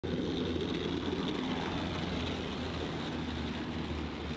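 Jagdpanzer Kürassier tank destroyer driving, its Steyr six-cylinder diesel engine running steadily under load with a low drone, easing off slightly as it moves away.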